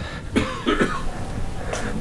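A person coughing, a few short coughs in quick succession in the first second, then fainter ones.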